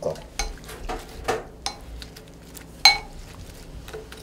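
A spoon stirring dried anchovies through a wet soy-sauce and chili-flake seasoning in a glass bowl, with a series of soft knocks against the bowl. The loudest is a ringing clink of spoon on glass about three seconds in.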